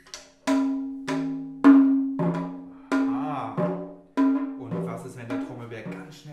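Frame drums struck by hand in a steady beat: about nine strikes, a little under two a second, each ringing with a low tone and fading away.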